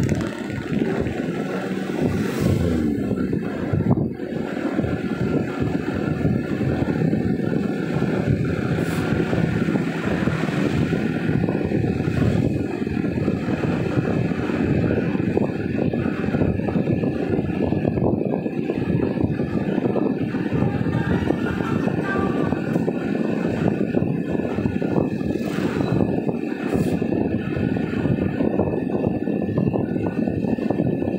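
Steady engine and road noise heard inside a moving car's cabin, with the engine note rising during the first few seconds as the car picks up speed.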